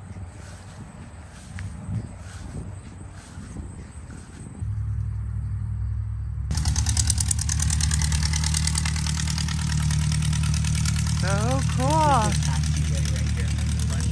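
Small single-engine high-wing airplane's piston engine and propeller running; the steady drone comes in about five seconds in and gets much louder a second and a half later.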